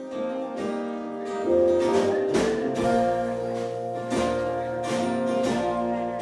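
A live band plays a song's instrumental intro: strummed acoustic guitar, with upright bass and drums coming in about a second and a half in.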